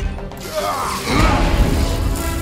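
Film battle soundtrack: a score under heavy fight sound effects, with metallic clashing and crashing from a sword fight. It grows louder about a second in.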